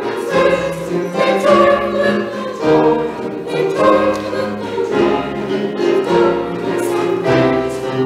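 Mixed church choir singing an anthem in harmony, accompanied by piano and a hand drum keeping a beat about once a second.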